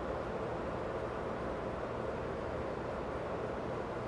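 Steady low machinery hum and hiss of an engine room, even throughout with no distinct events.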